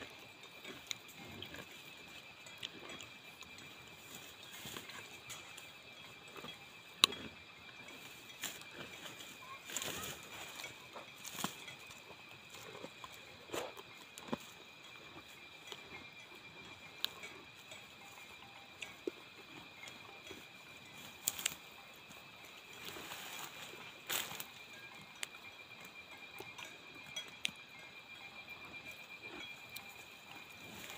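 A cow grazing close by: scattered short rips, crunches and rustles of grass being torn and chewed, with one sharp click about seven seconds in. Under it runs a steady high-pitched insect chorus.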